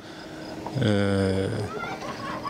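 A man's drawn-out hesitation sound, "eee", held on one steady pitch for about a second in a pause of speech.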